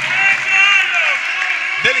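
Mostly speech: a man commentating over the steady background noise of a sports hall.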